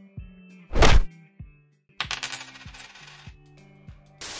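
Editing sound effects over soft background music: one sharp hit about a second in, then a bright metallic coin-jingle effect for about a second, from two seconds in.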